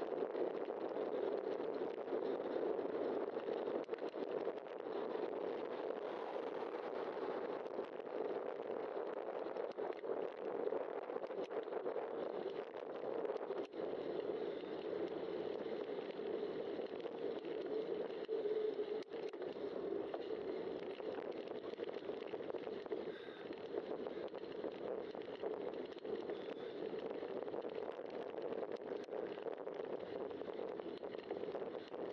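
Steady rushing wind and tyre noise on a bicycle-mounted camera's microphone while riding on a paved road, with a few faint clicks.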